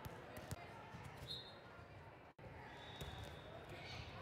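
Large echoing gym during a volleyball match: a low murmur of distant voices, a few sharp knocks of a ball on the hard court in the first second, and brief sneaker squeaks on the floor. The sound cuts out for a split second just past the middle.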